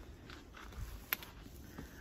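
Faint rustling from the phone being handled against a nylon jacket, with a low rumble and one sharp click about halfway through.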